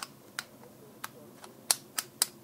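Plastic pieces of a sequential-movement puzzle cube clicking as they are slid in and out by hand: about five short, sharp clicks, the loudest near the end.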